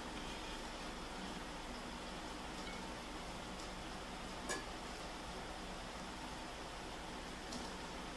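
Quiet steady hiss while rice is served from a wide pan onto a plate with a spatula, with one light click about four and a half seconds in and a softer one near the end.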